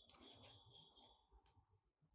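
Near silence with two faint clicks of a computer mouse about a second and a half apart. A faint high-pitched tone sounds under the first part.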